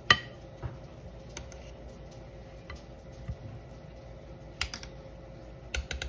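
Metal spoon clinking and scraping against a stainless steel saucepan and a plate while cooked rice is served. There is a sharp clink just after the start, then scattered light taps, with a quick run of clinks near the end.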